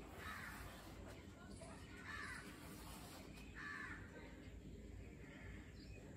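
Faint bird calls: three short, harsh calls about a second and a half apart, over a low steady background hum.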